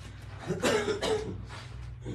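A person coughing, one main cough about half a second in and a smaller one after it, over a steady low hum.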